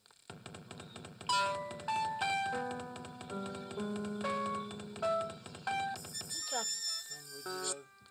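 Electronic synthesizer music: a buzzing low drone with a very fast pulse under a run of held notes that step from one pitch to the next. The drone stops about six seconds in, and short stacked tones slide downward near the end.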